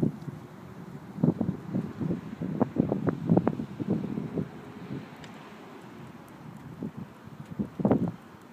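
Wind buffeting the microphone in irregular low gusts, heaviest in the first half, easing off past the middle, with a sharp gust right at the end.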